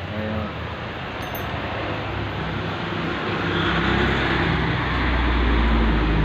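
Passing road traffic: a motor vehicle's engine and road noise building up steadily over several seconds, loudest near the end.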